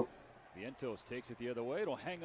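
Faint speech: a broadcast commentator's voice calling the play from the baseball game footage, played quietly.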